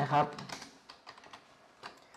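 Computer keyboard typing: a handful of separate keystrokes at an uneven pace, as a stock ticker is entered into charting software.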